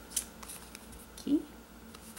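Playing cards being handled: a few soft clicks and slides as cards are set down on a wooden tabletop and shuffled between the fingers, the sharpest click just after the start.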